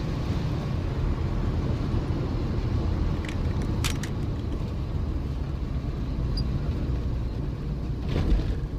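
Car engine running and road noise at steady speed, heard from inside the cabin, with two short knocks about three and four seconds in.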